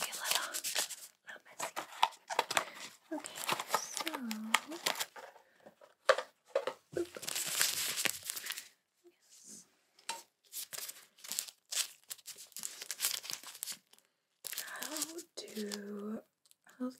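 Paper wrappers of adhesive fabric bandages crinkling and being torn open in gloved hands, in irregular spells of rustling and crackling with short gaps between.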